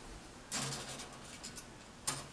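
Grey plastic model-kit sprues being handled: a rustle with a few light clicks and rattles, starting about half a second in and lasting about a second.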